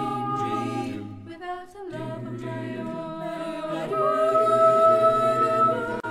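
An a cappella vocal group singing wordless held chords in close harmony. The chord fades briefly about one and a half seconds in, then a new chord comes in and swells louder about four seconds in.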